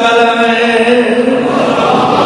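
Chanted religious recitation: a voice holding long, drawn-out notes, which blurs into a mix of many voices near the end.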